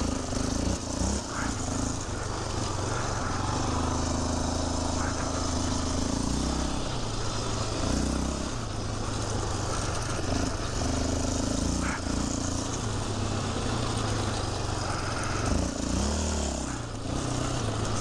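Yamaha Raptor 700R quad's single-cylinder four-stroke engine revving up and easing off again and again as it is ridden round the corners of a loose dirt track.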